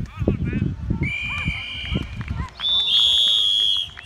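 Referee's whistle blown twice while a youth American football play is stopped: a shorter, quieter blast about a second in, then a longer, louder, shrill blast for over a second near the end. Shouting voices of players and spectators are heard under the first half.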